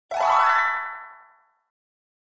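A cartoon sound effect for an animated intro logo: one ringing note that slides up in pitch, then fades out over about a second and a half.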